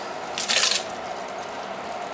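Diced tomatoes emptied from a container into a large stainless steel pot of browned ground beef: a short wet squish about half a second in, then a low steady hiss.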